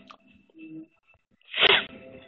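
A person's short, loud burst of breath about one and a half seconds in, over faint background.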